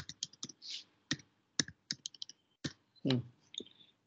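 Computer keyboard typing: about a dozen irregular keystroke clicks as a line of numbers is entered. A short voiced sound comes about three seconds in.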